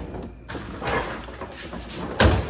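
A refrigerator drawer sliding: a short scraping rumble from about half a second in.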